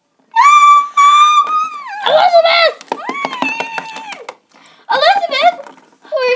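Children's high-pitched screams: a long held cry starting about half a second in that slides downward near the two-second mark, followed by more short and held cries.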